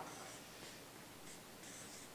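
Marker pen writing on flip-chart paper: faint, short, high scratchy strokes, several in a row.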